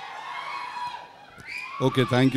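Crowd in a hall cheering and screaming, many voices wavering high in pitch. Near the end a man's voice starts loudly into the microphone.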